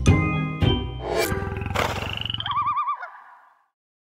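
Outro music with struck chords, then a logo sting: a rapid rattling growl with a swoosh, followed by a warbling tone that fades out about three and a half seconds in.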